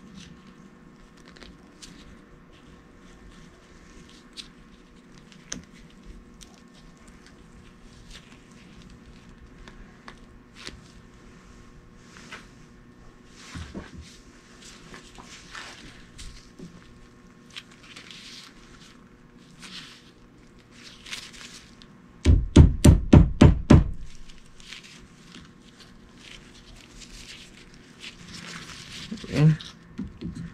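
Gloved hands handling a rubber CV boot and metal band clamp on a CV axle: scattered small clicks, taps and rustling. A little past two-thirds in comes a quick run of about eight heavy thumps, the loudest sound.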